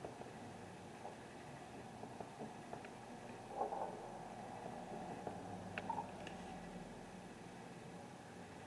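Faint steady background noise with a few faint, scattered clicks and knocks, the clearest about three and a half seconds in and just before six seconds in.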